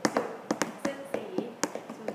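Hands tapping out a quick rhythm of sharp taps, about three a second, keeping time with a chanted list of words.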